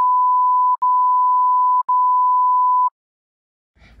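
Censor bleep: a steady high-pitched electronic tone dubbed over speech to hide a spoiler, heard as three beeps split by two very short gaps, stopping about three seconds in.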